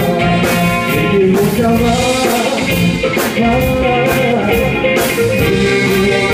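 Live band playing a soul/pop song: drum kit keeping a steady beat with cymbals, electric guitar and trumpet, with a man singing lead.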